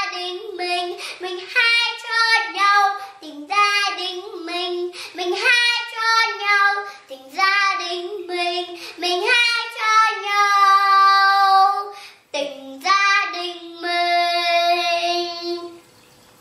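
A young girl singing a Vietnamese children's song unaccompanied. She holds a long note about ten seconds in and another near the end, where her voice stops.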